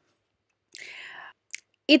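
A woman's soft breath in about a second in, followed by a small mouth click.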